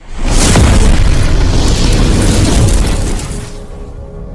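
Explosion sound effect for an animated intro: a sudden loud boom that rumbles on for about three seconds and fades near the end.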